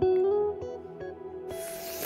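Soft background music with sustained, plucked guitar-like notes. About one and a half seconds in comes a brief rustling noise that lasts to the end.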